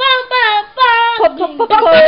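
A boy singing loudly, a run of short sung phrases with sliding pitch.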